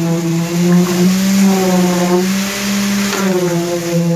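A poker-type concrete vibrator on a flexible shaft runs in fresh concrete, consolidating a retaining-wall footing. It makes a loud, steady, high motor hum whose pitch shifts slightly a few times as the head works through the mix.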